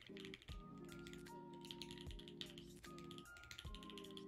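Fast, light keystroke clicking from typing on an ergonomic split-layout computer keyboard, over soft background music with held chords and a slow, soft beat.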